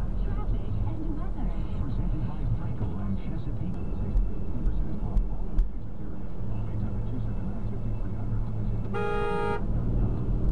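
A car horn sounds once for about half a second near the end, over the steady low rumble of a car driving, heard from inside the cabin.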